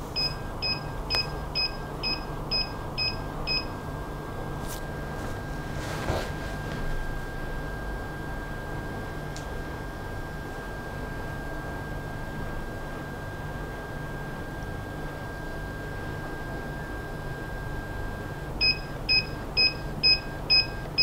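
Electronic beeps from the Creality CR-T 3D scanner setup as it calibrates: a run of about eight short beeps, roughly two a second, at the start, then a faint steady high tone, then another run of beeps near the end as calibration completes. A low hum runs underneath.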